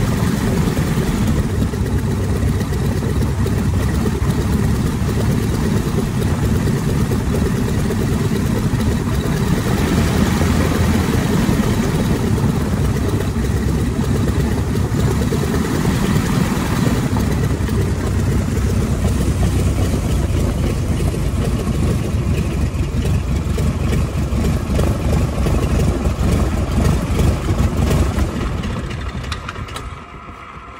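Tiger Moth biplane's de Havilland Gipsy Major four-cylinder inverted inline engine running steadily at low power while taxiing, heard from the open cockpit. Near the end the engine is shut down and the sound dies away.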